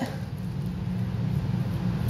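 Steady low background hum with no distinct events; dipping the strawberry into the melted chocolate makes no sound that stands out.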